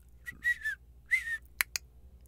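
A person whistles two short notes about half a second apart, the second one dipping slightly in pitch, followed by two quick clicks near the end.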